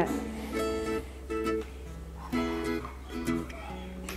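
Soft background music: a plucked string instrument playing a few separate notes and chords.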